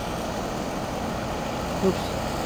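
Steady low rumbling background noise at an even level, with no distinct events.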